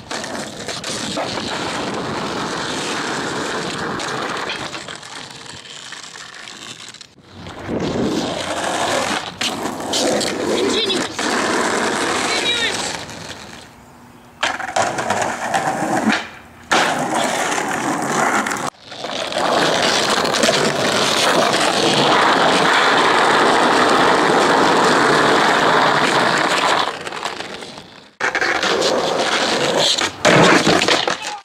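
Skateboard wheels rolling on concrete and asphalt, with board pops, landings and clattering impacts, in several short stretches that cut off abruptly. A shouted "ahh!" comes at the very end.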